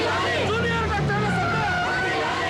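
A jeep's engine running as it drives up, a low steady hum, with voices shouting over it.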